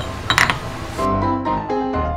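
A short metallic clatter about a third of a second in, as a steel plate is set into a milling-machine vise. Then background piano music starts about a second in, with a stepping melody.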